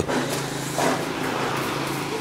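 An engine running steadily, a low even hum.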